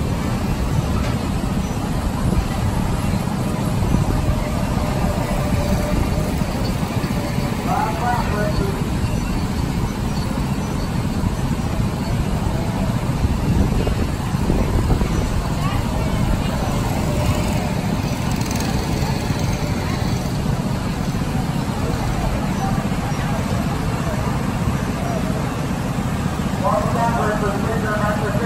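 A steady low rumbling noise with no clear engine tone, and faint voices about eight seconds in and again near the end.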